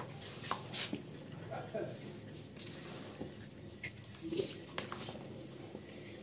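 Wooden spoon stirring macaroni salad in a plastic bowl: faint soft scrapes and squelches of the mixture, with a sharp knock at the very start. A few short, faint vocal sounds in the background.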